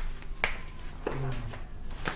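Footsteps in slide sandals: a few sharp slaps of the soles on a hard floor, roughly one every half second to second.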